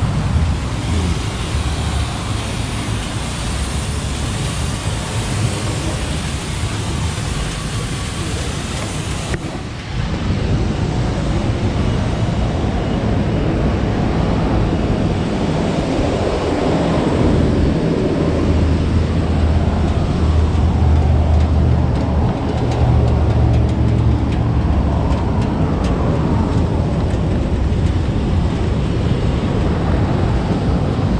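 Steady road traffic and engine noise, changing abruptly about a third of the way in, then with a low engine rumble that swells in the middle and eases near the end.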